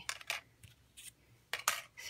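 Cardstock die-cuts and small crafting tools being handled: a few light, scattered clicks and rustles, the loudest pair about one and a half seconds in.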